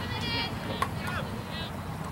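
Distant shouts of soccer players calling across the field, with one sharp knock of a soccer ball being kicked just under a second in, over a steady low outdoor rumble.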